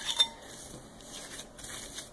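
A wooden spoon knocks twice against a glass bowl, in two quick clinks at the start, as sticky walnut and brown-sugar filling is scraped out of it. Faint scraping follows.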